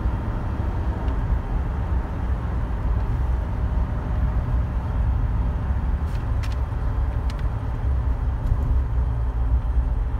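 Inside the cab of a 1988 Dodge Raider driving along a street: steady engine and road rumble.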